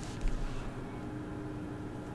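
Steady low background hum of a recording setup, with a thin steady tone running through it and a brief low thump about a quarter of a second in.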